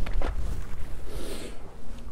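Wind rumbling steadily on the microphone, with two light clicks at the start and a short hiss about a second in.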